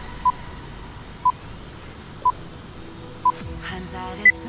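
Interval-timer countdown beeps: four short beeps at the same pitch, one a second, counting down the last seconds of a rest break.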